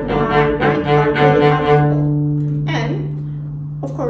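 Cello played staccato on the up-bow: a quick run of short detached notes, about four a second, ending on a held note a little under two seconds in that rings on and slowly fades.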